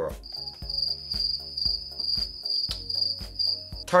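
A high, steady cricket chirping sound effect that stops just before the end, laid over background music with a regular beat.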